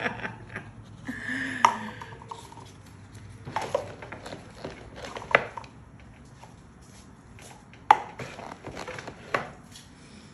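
Light handling noises at a table: a few sharp taps and knocks, about four in all, with soft rustling between them, as a paper cup and paper banknotes are handled and set down.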